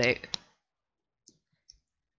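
Near silence with two faint, brief computer-mouse clicks in quick succession a little past halfway.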